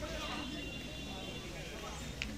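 Faint, indistinct voices of people talking in the background of a gathered group of men.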